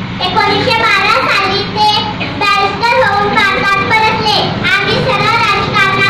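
A young schoolgirl's voice into a handheld microphone, in a melodic, sing-song delivery with pitch rising and falling throughout.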